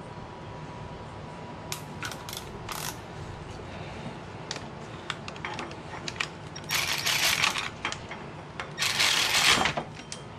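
Cordless Milwaukee M12 Fuel 3/8-inch ratchet running in two short bursts, about seven and nine seconds in, snugging the bolts of a freshly gasketed part on the engine head. Scattered light clicks of tools on metal come before.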